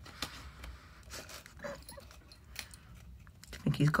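Faint scattered taps and scrapes of a plastic nail file being batted by a cat's paw against the tiled floor and the metal threshold strip under a door, with a short faint pitched sound about midway.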